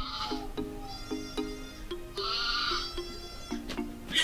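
Background film music with a repeating plucked pattern of low notes. Two short wavering cries stand out above it, one at the very start and a louder one about two seconds in.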